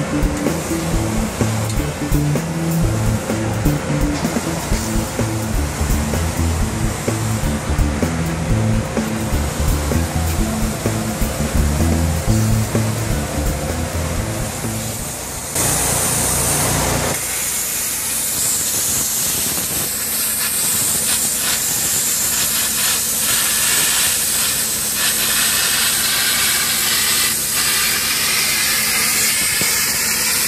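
Background music until about halfway, when a plasma cutter's steady hiss starts. The music drops out a second later, leaving the cutter's hiss with a faint low hum as it cuts through a metal sheet.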